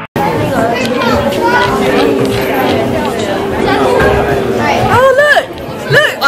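A crowd of people chattering, many voices overlapping. Near the end one woman's voice comes close and clear.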